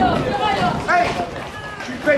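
Several people talking and calling out over one another, with no single clear speaker.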